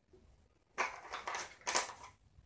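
Small Cuisenaire rods clattering against one another as a hand rummages through a pile of them, in two short bursts about a second in and near the end.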